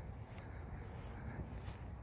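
Steady high-pitched chorus of insects, such as crickets, trilling without a break.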